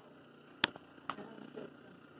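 A sharp click about two-thirds of a second in, then a softer click about half a second later, over a quiet background.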